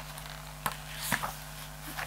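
Quiet room tone with a steady low hum and two faint soft ticks.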